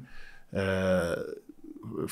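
A man's held vocal hesitation, one drawn-out 'uhh' at a steady pitch starting about half a second in and lasting just under a second.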